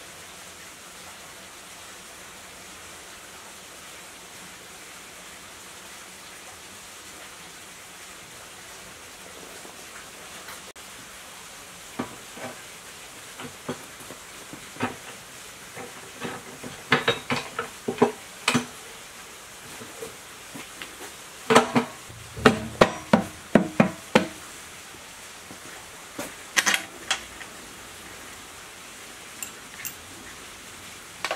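A steady faint hiss at first, then metal clinks and knocks as an engine's metal gear-case cover is set over the timing gears and its fittings handled: scattered taps from about twelve seconds in, with the busiest clatter in two clusters a little past the middle.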